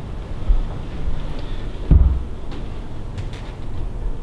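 Low thuds and rumbling from footsteps and the handling of a handheld camera as it is carried through a doorway, with the loudest thud about two seconds in and a few faint clicks after it.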